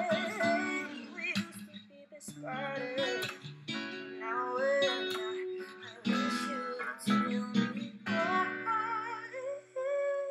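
Acoustic guitar playing R&B chords under a woman singing slow, wavering sung lines.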